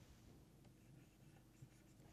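Near silence with faint scratching and small taps of a stylus drawing on a pen tablet, one tap a little louder near the end.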